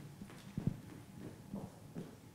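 A few faint, short soft knocks, the clearest about half a second in and another about one and a half seconds in.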